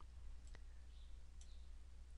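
A few faint computer mouse clicks over near-silent room tone, as the mouse button is pressed and released.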